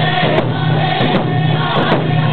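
Round dance song: a group of singers chanting together in unison over hand drums, with drum strokes at intervals through the steady singing.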